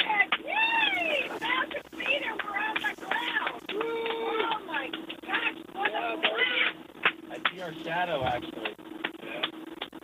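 Excited crew voices cheering and whooping, heard over the capsule's audio feed, with a steady low hum underneath.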